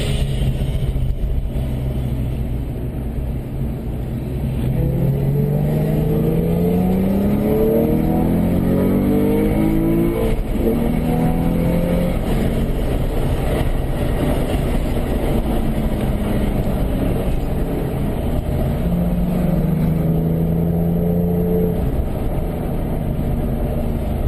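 Porsche engine heard from inside the car, its revs climbing steadily for several seconds, dropping about ten seconds in, then rising and holding again later on.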